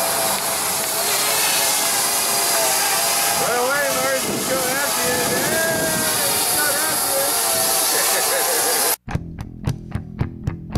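A red Parrot Bebop 2 quadcopter hovering close by: a steady whirring hiss of propellers over a hum whose pitch wavers as the motors adjust. About nine seconds in it cuts off abruptly and gives way to metal music with an even beat of bass and drums.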